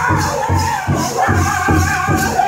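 Powwow host drum group: several men striking one large shared drum together in a steady beat, about three strokes a second, while singing in unison.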